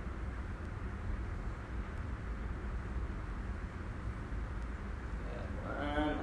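Steady low room noise, a rumble with a soft hiss, and no distinct events. Near the end comes a brief voiced sound.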